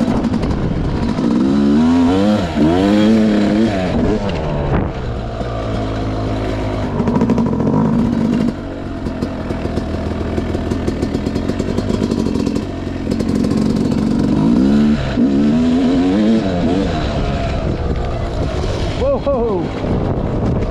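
Yamaha YZ250X two-stroke dirt bike engine being ridden, the revs rising and falling in several pulls, with a steadier stretch in the middle.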